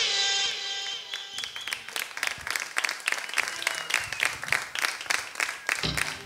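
The last chord of a song rings out and fades, then a concert audience applauds, a dense patter of clapping hands.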